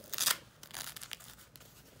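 A short ripping burst from a hook-and-loop strap closure on a cat diaper being worked, about a quarter second in, followed by faint rustling of the diaper's fabric.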